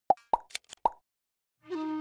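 Channel logo sting sound effect: about five quick pops in the first second, then after a short silence a steady held, horn-like tone starts near the end.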